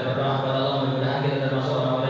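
A man's voice chanting in long, drawn-out melodic notes with few breaks, in the manner of Arabic recitation or prayer.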